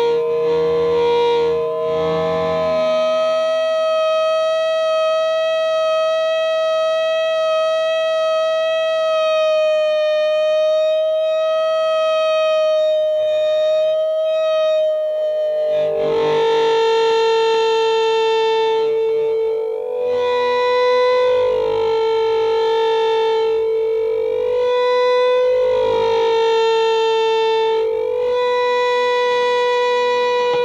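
Solo electric guitar improvisation played through effects pedals: a long held tone rich in overtones steps up in pitch a few seconds in and sustains with a slow waver. From about halfway a lower tone swings back and forth between two nearby pitches in a wailing pattern.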